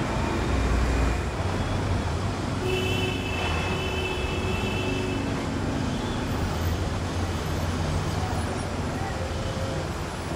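Street traffic noise with a steady low engine rumble. A high-pitched steady tone sounds for about two seconds near the middle.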